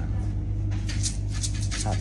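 Steady low hum of a kitchen ventilation system, with a few brief light clicks and rustles as a plastic jar of coriander seeds is handled; a man's voice begins near the end.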